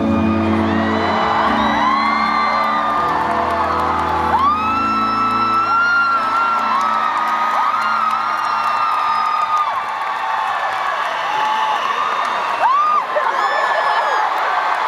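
A concert crowd of fans screaming in many long, high-pitched cries as the song's last music fades out over the first few seconds. The cries swell and overlap once the music stops.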